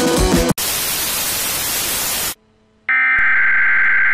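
Music cuts off abruptly, giving way to TV static hiss for nearly two seconds; after a short silence a steady electronic test-card tone of an emergency-broadcast signal begins and holds.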